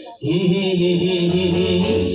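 A male singer holds one long, chant-like note with the live band sustaining beneath it. The note comes in just after a brief break at the start.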